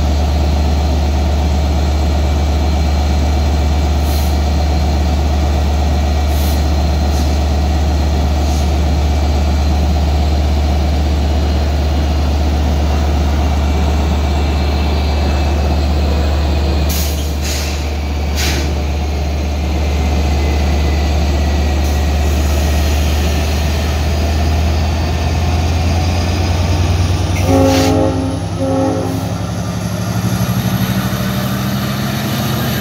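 LIRR DE30AC diesel-electric locomotive's EMD 12-cylinder 710 engine running with a steady low hum, with a few brief high-pitched sounds along the way. Its engine note rises as it throttles up to pull the train out, and the horn gives two short blasts near the end.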